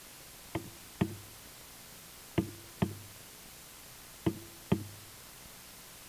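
Soft knocks in pairs, the two strokes under half a second apart, repeating about every two seconds in an even rhythm like a slow heartbeat.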